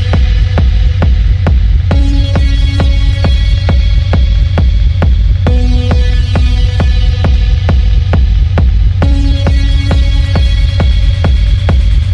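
Dark techno playing loud: a steady, evenly pulsing beat over very heavy deep bass, with a short synth figure that comes back about every three and a half seconds.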